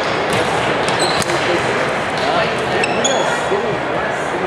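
Badminton doubles rally on a wooden sports-hall floor: several sharp racket strikes on the shuttlecock and short high squeaks of court shoes, over the echoing chatter of many people in the hall.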